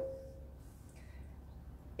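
Quiet room tone with a low steady hum; a faint single tone rings on and fades out within the first half second.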